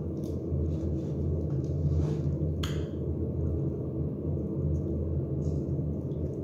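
A red silicone spatula stirring chicken and vegetables in a sauce-filled roasting pan, giving a few soft, brief scrapes and squishes, the clearest about two and a half seconds in. Under it runs a steady low hum.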